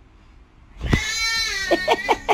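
An infant starts crying loudly about a second in: one long wail that falls in pitch, then a quick run of short, choppy cries.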